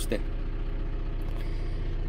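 Wheel loader's diesel engine running steadily, a constant low hum heard from inside the cab.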